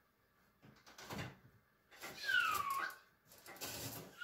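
Plastic filter and front panel of a wall-mounted split air conditioner's indoor unit being worked loose by hand: a light knock about a second in, then a squeak falling in pitch, and a scraping rustle near the end as a dust filter slides out of its slot.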